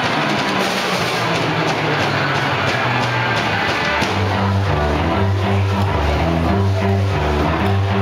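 Live rock music with drums and guitar. About halfway through, the low end changes to a strong, repeating bass line.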